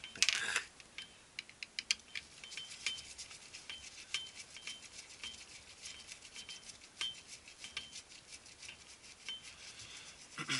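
Screwdriver turning screws out of a plastic laser-printer drum unit housing: a steady run of small clicks and ticks, several a second, from the bit and screw threads working in the plastic.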